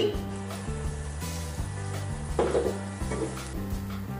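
Minced garlic sizzling in melted butter in a stainless steel pan, stirred with a silicone spatula.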